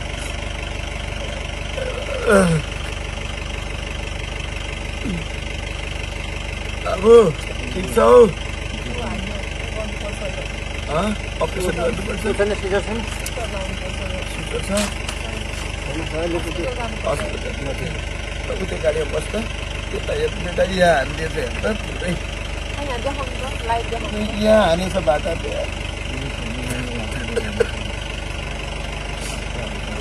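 Steady mechanical hum like an idling engine, under people's voices that come at intervals. There are short loud vocal outbursts about 2, 7 and 8 seconds in, and more scattered talking later.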